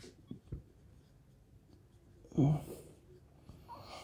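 Marker pen writing on a whiteboard in faint, short strokes, with two light taps in the first second. About halfway through comes a brief, louder breathy vocal sound from the writer.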